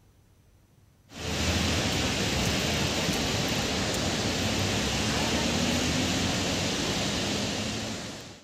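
Steady rushing of floodwater pouring out through open dam spillway gates, starting suddenly about a second in and fading near the end.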